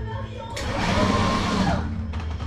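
A loud rushing whoosh of noise swells about half a second in and fades away near the end, over a low steady hum.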